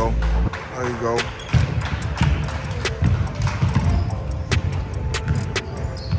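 Basketball being bounced on a hardwood gym floor during play, with many sharp thuds, over a background of voices. A couple of short falling squeaks come in the first second or so.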